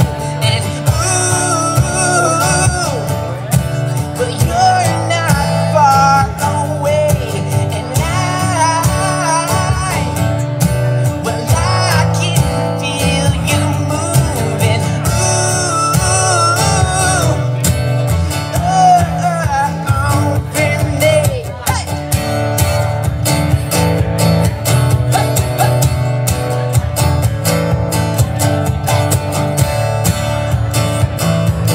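Amplified acoustic guitar strummed steadily under a man's singing voice. The singing stops a little past twenty seconds in and the guitar carries on alone.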